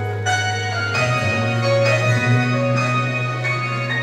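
Church band's instrumental introduction to a gospel song: sustained keyboard-like chords with bell-like struck notes over a held low bass, the chord changing about every second.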